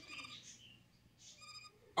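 Quiet pause in a man's spoken monologue: low room tone with a few faint, brief sounds.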